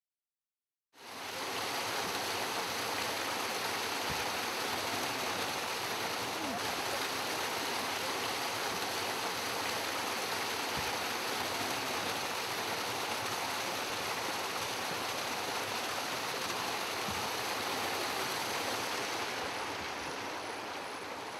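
Steady rush of flowing river water, fading in about a second in and holding level throughout.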